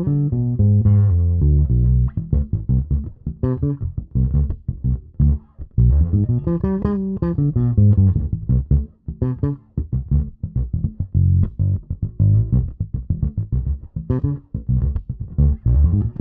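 Fodera Monarch Standard P four-string electric bass played solo: a quick plucked lick of single notes that runs through a B diminished arpeggio (B, D, F, A flat) and on into a D minor phrase.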